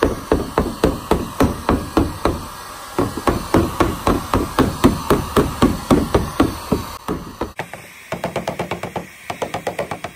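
Repeated hammer blows, about four a second, knocking a dent out of a plastic car bumper, over the steady blowing of a heat gun. About three-quarters of the way in the blows turn lighter and quicker.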